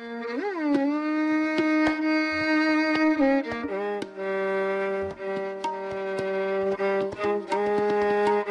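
Violin playing long held notes of a Hindustani raag (Raag Jog), with a quick slide up and back down about half a second in and a shift to a new note a little after three seconds. Light tabla strokes sound throughout.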